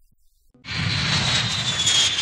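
Jet aircraft passing overhead: a loud rushing engine noise with a high whine that slowly falls in pitch, starting abruptly about half a second in.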